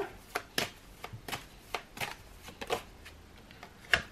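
Tarot deck being shuffled by hand: a string of short, irregularly spaced card flicks and clicks.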